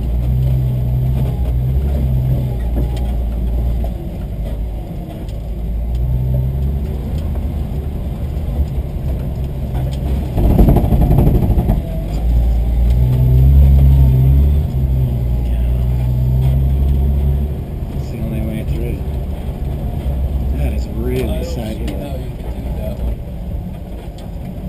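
Engine of a 1960 Willys Station Wagon heard from inside the cab, running at low speed as the wagon drives over slickrock, its drone rising and falling with the throttle. About ten seconds in there is a louder, rougher rumbling stretch lasting a second or two.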